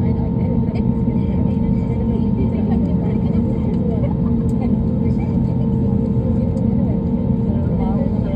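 An airliner's engines and rushing air heard from inside the passenger cabin: a loud, steady deep rumble with an even droning hum, around takeoff. Faint voices murmur underneath.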